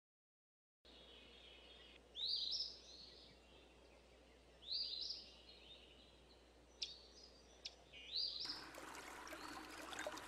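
Faint outdoor ambience in which a bird calls three times, each call a short rising chirp. Two sharp clicks come about seven seconds in, and a steady hiss starts near the end.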